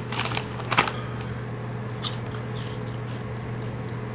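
Potato chips crunching as they are chewed: a few short, crisp crunches near the start, another about a second in, and a couple more around two seconds in.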